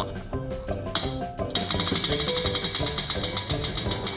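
Spinning prize wheel, its clicker ticking rapidly against the pegs, starting about a second and a half in at around ten clicks a second and slowing slightly as the wheel winds down.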